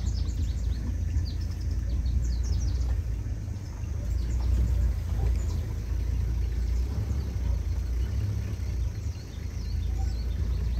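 Engine of an open safari vehicle running low and steady as it creeps through the bush. Birds chirp over it, most busily in the first few seconds and again about halfway through.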